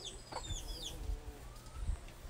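Chickens clucking in a yard, with several short, high, falling chirps in the first second and a low thump near the end.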